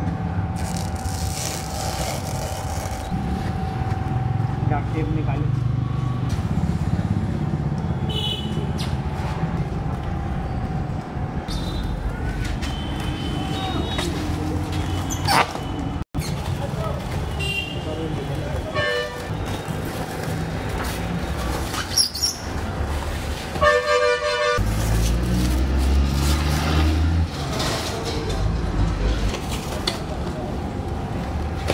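Busy background noise: a steady low rumble like road traffic, with indistinct voices. There is one short vehicle-horn toot about three-quarters of the way through.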